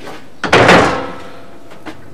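A door being pulled open: one loud, noisy sound about half a second in, lasting about half a second and fading, then a faint knock near the end.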